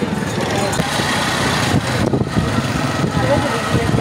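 Busy market street noise: many people talking at once, with vehicle engines running among them.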